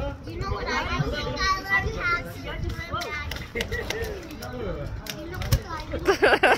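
Indistinct voices of people talking and calling out, with no clear words.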